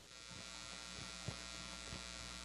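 Low, steady electrical hum and buzz on the audio feed, with a faint tick about two-thirds of the way through.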